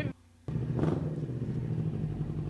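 A Kawasaki sport motorcycle's engine idling with a steady low hum. The sound drops out briefly at the start, under one short spoken word, and comes back about half a second in.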